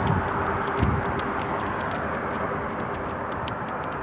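Steady street traffic noise beside a busy road, with faint regular ticks about two or three a second from walking.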